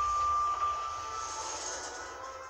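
Lift arrival chime ringing out as one fading tone, over the low rumble and hiss of the lift doors sliding open at the floor stop.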